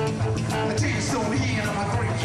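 Rock band playing: drum kit keeping a steady beat under guitar.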